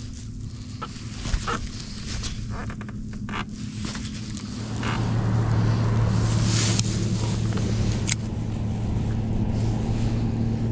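Boat motor running with a steady low hum that gets louder about five seconds in. Small clicks and handling knocks are heard in the first half.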